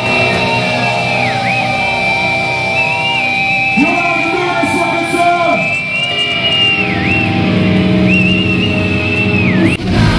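A hardcore band's electric guitars holding high sustained notes that swoop down in pitch and back up several times, over lower held, bending guitar notes, with no drumming.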